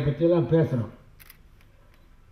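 A voice speaking, which breaks off about a second in and leaves a pause with a few faint clicks.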